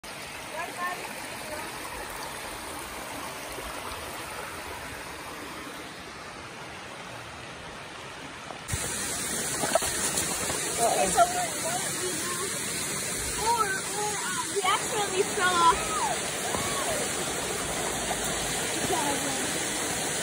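Shallow rocky brook running over stones. About nine seconds in, the water becomes louder and brighter as it is heard close up, rushing around the rocks.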